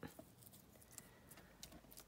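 Near silence, with a few faint ticks of glued paper being pressed and smoothed down by hand on a cutting mat.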